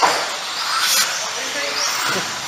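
Electric 4wd RC buggies running on a carpet track: a steady hiss of motor and tyre noise, with a high whine rising about a second in. Faint voices are heard under it.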